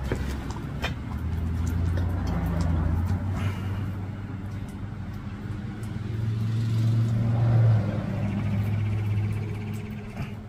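Steady low rumble of the running forge, swelling louder about three-quarters of the way in, with a few light metallic clicks near the start as molten copper is poured from the crucible into graphite moulds.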